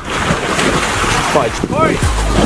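Loud rushing wind and handling noise on the camera microphone as the camera is swung about in a hurry, with a man shouting "Corey!" near the end.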